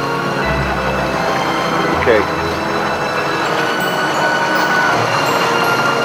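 A boat's motor running steadily under wind and sea noise, with a brief faint voice about two seconds in.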